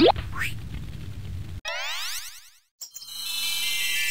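A cartoon boing sound effect lasting about a second, midway through. Then music fades in with held chords, growing louder toward the end.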